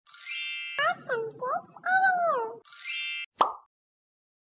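Logo-intro sound effects: a bright sparkling chime, a high, child-like voice speaking with sliding pitch for about two seconds, a second sparkling chime, then a single short pop.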